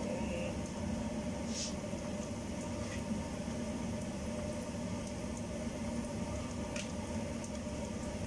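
Chopped garlic frying gently in oil in a pan, a steady low sizzle over a faint steady hum, with two light knife taps about a second and a half in and again near the end.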